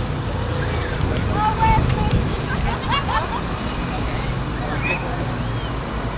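Busy outdoor promenade ambience: indistinct voices of passers-by talking over a steady low rumble.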